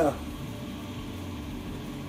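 Steady low mechanical hum of the workshop, even and unchanging, with no distinct events.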